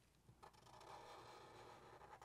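Near silence, with a faint, steady scratch of a Sharpie marker drawing on paper starting about half a second in.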